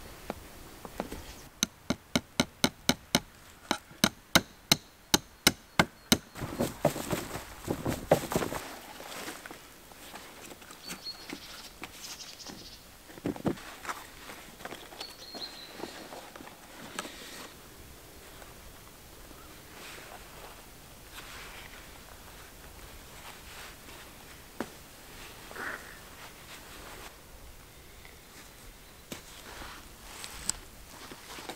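Hand-work sounds while assembling a wood-and-leather bellows: a run of about fifteen sharp, evenly spaced taps, roughly three a second, then rustling of the leather sheet and scattered light taps.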